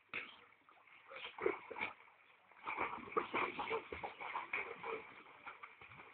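Water splashing and sloshing in an above-ground pool as a dog is carried in and thrashes about; irregular splashes start about a second in and grow busier through the second half.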